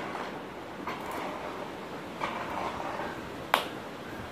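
Three sharp clicks from a signer's hands striking or snapping as they sign, the last, about three and a half seconds in, much the loudest, over a steady background hiss.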